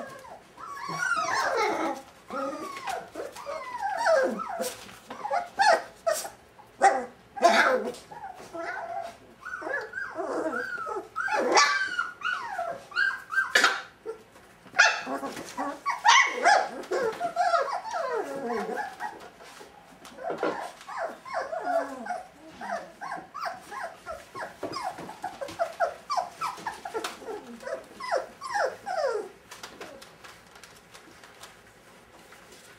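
A litter of five-week-old Brittany puppies whining and yelping almost without pause, in short calls that slide down in pitch. Sharp, loud yaps break in several times in the middle, and the calling eases a little in the last third.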